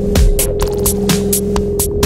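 Electronic dance music (deep house / minimal techno): a steady droning synth tone under hi-hats ticking in an even rhythm about four times a second. The kick drum drops out just after the start.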